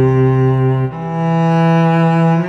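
Sampled solo cello from the Cello One Volume 2 virtual instrument playing long bowed notes, stepping up to a higher note about a second in.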